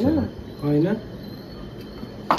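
A voice trails off at the start, then gives a short rising 'hmm'-like sound just under a second in. After that the room is quiet under a faint, steady high-pitched tone.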